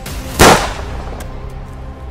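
A single handgun shot, one sharp bang about half a second in with a short trailing decay, over dramatic background music.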